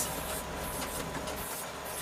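Cab noise of a John Deere 6810 tractor working a field with rollers in tow: its six-cylinder diesel engine running steadily under load, a steady drone with a faint high whine, heard from inside the closed cab.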